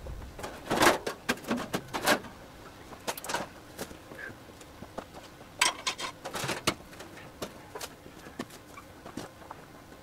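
Scattered light clanks and knocks of scrap metal pieces being picked up and handled. They come in bunches about a second in, around three seconds in, and again around six seconds in.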